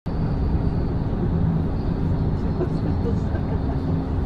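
Steady low rumble of a coach bus in motion, heard from inside the cabin, with a faint steady hum over it. It starts suddenly after silence.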